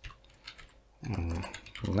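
Computer keyboard keystrokes, a few quiet clicks as code is typed, with a man's voice coming in about a second in.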